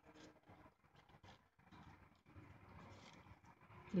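Quiet handling noise, almost silence: fingers pressing and rustling a satin ribbon flower, with a few faint light clicks.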